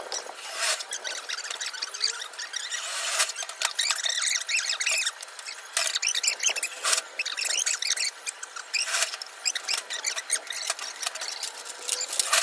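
Cordless drill driving screws through roofing sheets in short bursts, about four times, with high squeaking between them.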